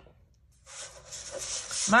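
Sheet of cardstock sliding and rubbing across a plastic scoring board as it is turned by hand, a papery rustle starting about half a second in and growing louder.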